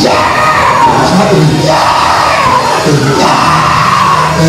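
A preacher's loud, sung and chanted preaching over steady church music, with the congregation shouting and clapping along: the closing celebration of a Black Baptist sermon.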